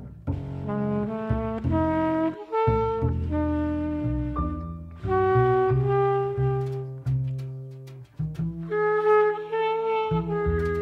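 Modern jazz quintet recording: alto saxophone and trumpet play a line of held notes that change pitch every half second to a second, over double bass, with a few drum hits near the end.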